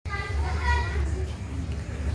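Children's voices calling and chattering while playing, over a steady low rumble.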